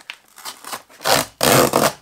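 Cardboard shipping box being torn open by hand: a few small scuffs, then two loud rips in the second half as the flap and tape tear away.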